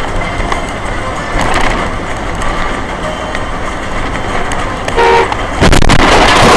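Steady road and traffic noise, with a short car horn toot about five seconds in, then a few sharp knocks just before the end.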